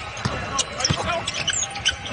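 A basketball being dribbled on a hardwood court: several sharp bounces about a third of a second apart, over low arena background noise.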